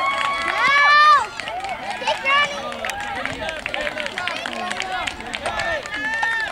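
Crowd of spectators and players cheering and calling out in many overlapping high voices as a runner reaches base, with one long held shout about a second in and another short shout a little later.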